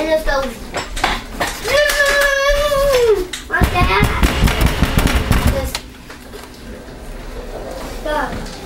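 A young child's voice: a long, drawn-out vocal sound about two seconds in, then more speech over low knocks and handling bumps, which go quiet near the end.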